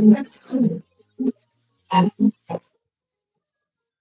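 A man's voice through a microphone in short, clipped bursts, then the sound cuts out to silence about two and a half seconds in.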